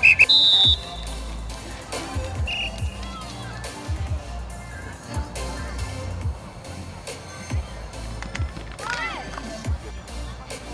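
A whistle gives one short, loud blast right at the start and a shorter, fainter one about two and a half seconds in, the kind that stops a drill. Music plays underneath, with distant young voices near the end.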